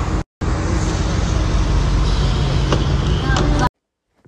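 Loud low rumbling noise on a phone recording, dropping out briefly just after the start and cutting off suddenly a little before the end.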